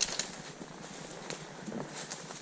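A horse walking through dry fallen leaves: irregular crunches and rustles of its hooves in the leaf litter, a couple of the sharpest right at the start.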